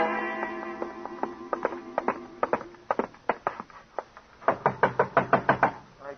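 The tail of a music bridge fades out, then knocking on a door: scattered knocks at first, then a fast burst of rapid pounding about two-thirds of the way through.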